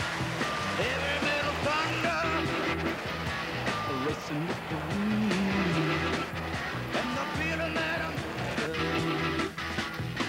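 Rock music with a steady beat.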